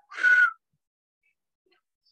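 A short, breathy whistle lasting under half a second, one steady note that dips slightly at its end, like a sharp breath whistling through the lips or nose.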